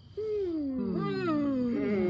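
Several people's voices in a drawn-out, overlapping chorus. Each voice slides down in pitch, and they come in at slightly different times, starting a moment in. It is a wordless group response.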